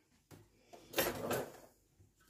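A brief scraping clatter about a second in, lasting about half a second, from something being handled in the kitchen.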